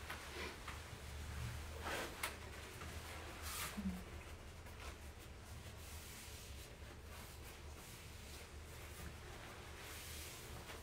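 Faint rustling of a paper tissue being pressed and wiped over a face to dry it, a few soft swishes in the first four seconds, over a low steady hum.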